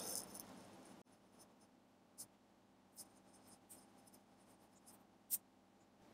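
Near silence with a few faint, brief clicks spread through it, the last and loudest shortly before the end.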